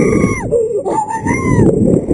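A man screaming on a thrill ride: two long, high screams, the second bending upward near its end, over a constant loud low rush of noise.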